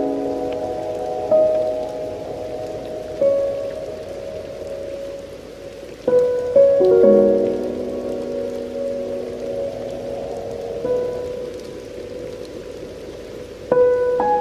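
Slow, soft piano music: notes and chords struck every few seconds and left to ring out, over a steady rain sound.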